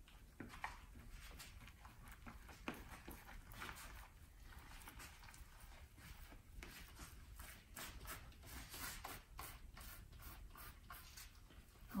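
Faint, irregular small clicks and rustles of gloved hands handling resin-soaked carbon fiber cloth and its roll along the rib mold.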